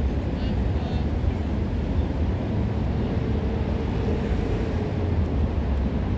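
Steady low rumble of outdoor background noise with no distinct events, and faint distant voices.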